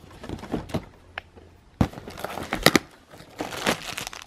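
Cardboard door of an advent calendar being prised and torn open by hand, with a few sharp snaps in the middle, and a small plastic bag crinkling as its contents are pulled out.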